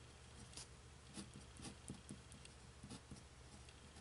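Nib pen writing on paper: faint, short scratching strokes at an uneven pace as a word is written out.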